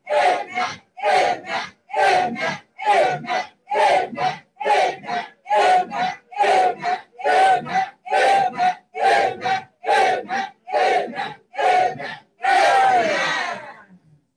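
A man's voice through a microphone, shouting a rapid two-syllable prayer chant over and over, about one pair a second, ending in one longer cry that falls in pitch.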